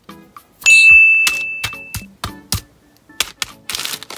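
A bright single ding rings out about half a second in and fades over about a second and a half, among a string of sharp taps. Near the end a plastic Skittles wrapper starts to crinkle.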